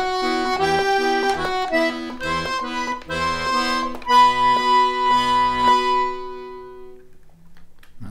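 D/G two-row melodeon (diatonic button accordion) playing a short minor-key phrase: right-hand melody notes over short, rhythmic left-hand bass-and-chord pulses. It ends on a long held chord that fades out about six to seven seconds in.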